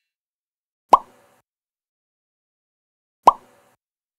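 Two identical short plop sound effects, about two and a half seconds apart, each with a quick drop in pitch, from an animated intro's pop-up graphics.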